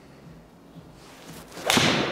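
A PXG 0317 ST blade five iron swung at a golf ball: a short rising swish, then one sharp crack of the strike near the end. The ball is caught off the hosel, a mishit.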